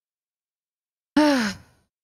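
A woman's voiced sigh, falling in pitch, about a second in.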